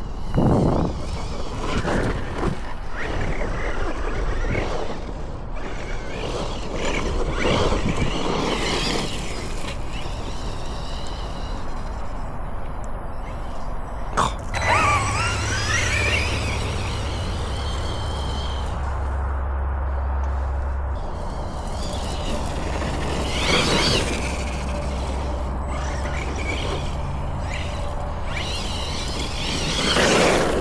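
Losi Hammer Rey RC truck driving over grass: its electric motor and drivetrain whine in repeated bursts that rise and fall. A sharp knock comes about halfway through, followed by a rising and falling whine.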